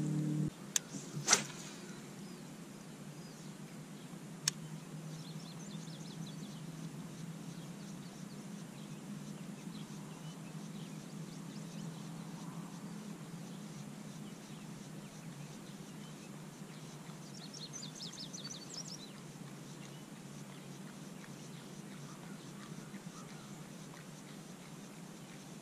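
Quiet open-air ambience over a steady low hum. A couple of sharp knocks come in the first two seconds and another a few seconds later. Faint bird chirps come in two short clusters, about 5 seconds in and again near 18 seconds.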